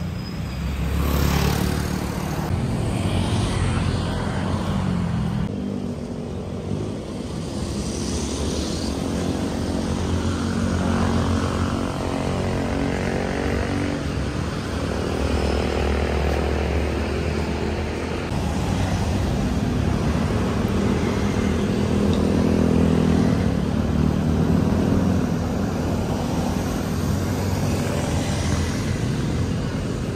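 Motor vehicle engines running, heard in overlapping stretches that swell and shift in pitch as they pass by.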